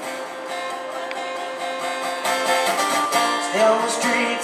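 Acoustic guitar strummed in an instrumental break between verses, with held chords and a few sharper strums in the middle.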